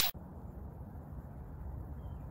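Steady low outdoor rumble picked up by a handheld phone microphone, with no distinct events; a swoosh sound effect cuts off right at the start.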